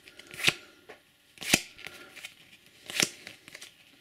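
Stiff trading cards being flicked off a hand-held stack one at a time: three sharp card snaps about a second or so apart, with faint rustling of card edges between them.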